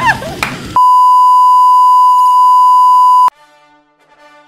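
A loud, steady electronic bleep tone, held for about two and a half seconds and cut off abruptly. It starts just under a second in, right after a brief shriek of laughter, and faint music follows it.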